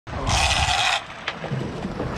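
Water splashing at the boat side in one burst of under a second, followed by a single short click.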